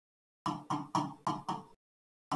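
Stylus tapping against an interactive whiteboard screen while handwriting a word: five quick knocks in a little over a second.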